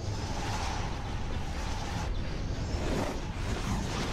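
Sci-fi sound effect of Y-wing starfighters flying past at speed: a steady, dense engine rush, with a whoosh sweeping by about three seconds in.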